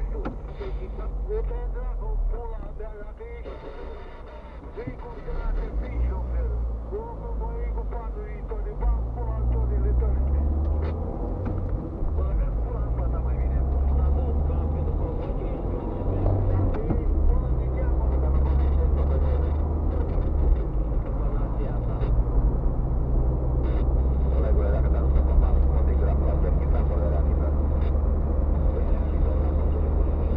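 Low drone of a car's engine and tyres heard inside the cabin while driving. It grows louder about ten seconds in as the car picks up speed.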